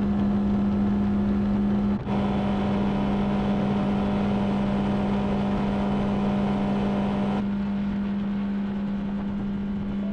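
Yamaha four-stroke outboard motor running steadily at cruising speed, a constant drone with water and hull noise. There is a brief dip about two seconds in, and the upper hiss falls away at about seven and a half seconds.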